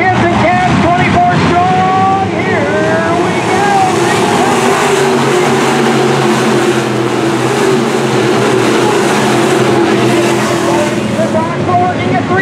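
A pack of IMCA Sport Mod dirt-track race cars with V8 engines running hard as the field passes close by. The engine noise swells about four seconds in, holds dense and loud, and eases near the end.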